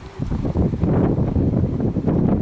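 Wind buffeting the microphone: a loud, low rumble that starts just after the opening and carries on.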